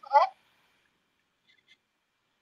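A woman's voice in the first moment, one short word or sound falling in pitch, then near silence on the call line.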